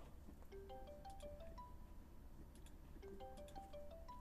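Faint electronic call ringtone: a short chime-like tune of a few notes, heard twice, once about half a second in and again about three seconds in.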